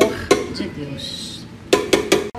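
A spatula stirring and scraping a thick chocolate-and-avocado brigadeiro mixture in a bowl, with a few knocks against the bowl near the end.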